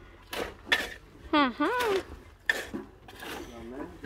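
Steel shovel blades scraping and scooping into stony soil, a few separate short scrapes, as dirt is thrown back around a well's concrete ring.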